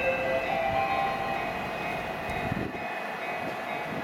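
JR East E231-series electric train pulling out of the station, its traction motors whining over rolling wheel noise and growing lighter as it moves away.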